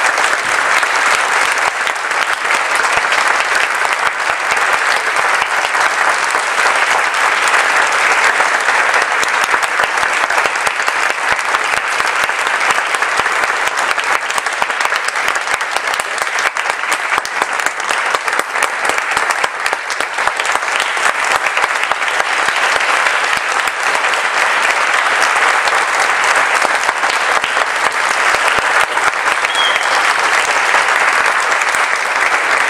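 Concert audience applauding, steady and unbroken.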